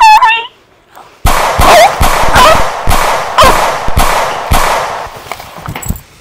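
A short high vocal cry, then from about a second in a rapid series of loud, sharp bangs, about two a second, with a voice crying out between them.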